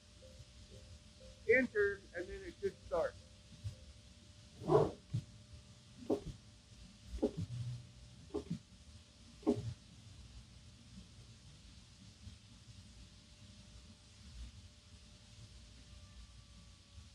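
Gerber DS2500 flatbed cutting table running a cut: the gantry and rotary cutter head make a few short motor moves with gliding whines, then a series of short sounds about a second apart. After about ten seconds only the steady low hum of the vacuum hold-down blower remains.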